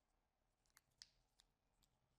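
Near silence with about four faint, short clicks from the second half on: the small taps of cylindrical 18650 lithium-ion cells and a cell pack being handled.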